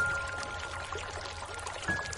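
Slow, soft piano music over a steady hiss of rain. A note is struck right at the start and left to ring, and a softer high note follows near the end.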